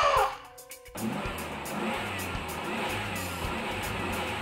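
A held, pitched sound bends down and stops just after the start. From about a second in, a car-engine sound effect runs steadily as the pickup truck pulls away, over background music.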